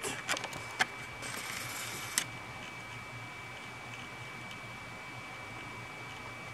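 A few light clicks and a short rustle in the first two seconds as the camera is handled and zoomed in, then a steady quiet hiss with a faint, steady high whine.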